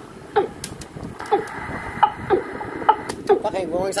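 A recorded bird call played back from a cassette tape: a short call falling in pitch, repeated about once a second over tape hiss, with a quick warbling run near the end.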